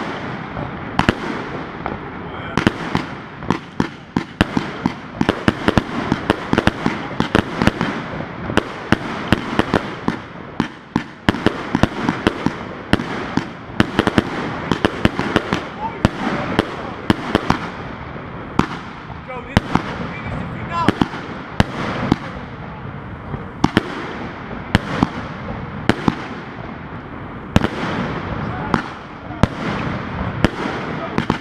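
The U31415 Triplex, a 288-shot firework cake, firing continuously: rapid launch thumps and bursting reports several times a second over a continuous hiss.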